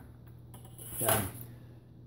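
A pause in a man's talk: an intake of breath and a brief hesitant "uh" about a second in, otherwise quiet room tone.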